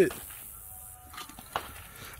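The tail of a man's voice, then low outdoor background with a single faint, sharp click about one and a half seconds in; no nearby rifle shot.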